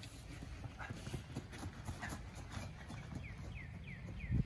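Quick, rhythmic footfalls of a sprinter running on grass while towing a speed-training resistance parachute. Near the end a series of short falling chirps, about three a second, joins in.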